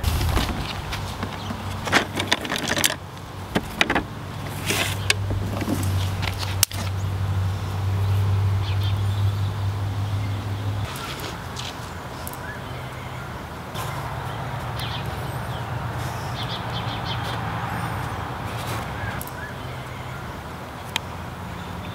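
A steady low engine hum, as from a motor vehicle running nearby, which changes about eleven seconds in. Several sharp clicks and knocks come in the first six seconds.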